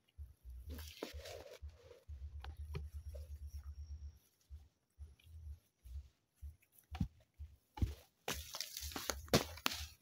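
Footsteps in rubber boots on loose soil and grass, with faint rustling and a few sharp knocks in the last three seconds.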